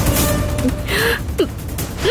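Dramatic TV-serial background music with percussive hits, and a woman's short, sharp gasps about a second in.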